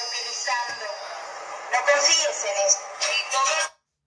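A recording of voices shouting a message, played back through a small speaker held close to the microphone. It sounds thin, with no low end, and cuts off abruptly near the end.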